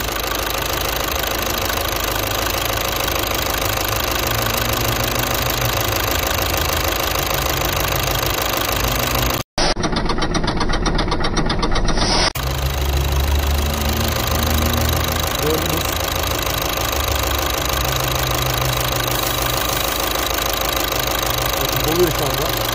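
Volkswagen Jetta diesel engine idling steadily, heard up close in the engine bay over the injectors. The sound drops out briefly about nine and a half seconds in.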